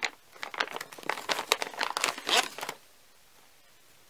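Clear plastic bag crinkling in irregular bursts as a hand rummages inside it and pulls out a small first-aid case. The crinkling stops just under three seconds in.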